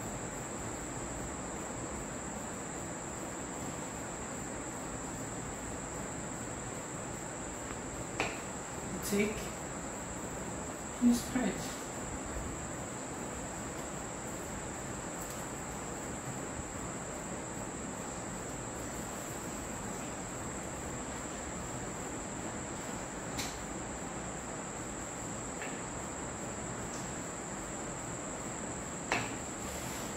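A steady high-pitched trill or whine over a low hiss, with a few soft knocks and taps from handling the cake work, the loudest a pair about eleven seconds in and another near the end.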